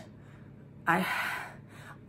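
A woman's voice: about a second in she says a short "I" that runs into a long, breathy, audible breath, fading out.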